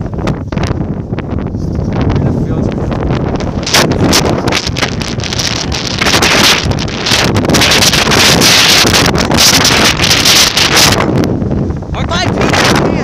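Wind buffeting a phone's microphone in loud, rough gusts. The gusts grow stronger about four seconds in and are heaviest through most of the second half.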